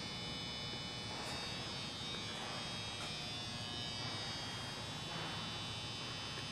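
Faint, steady electrical hum and buzz with no change through the pause: background room tone.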